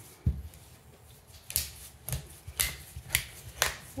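Oil filter cutter working through the steel can of a Fram Ultra Synthetic oil filter as the filter is turned by hand, the cut nearly finished. A dull knock just after the start, then sharp metallic clicks about twice a second.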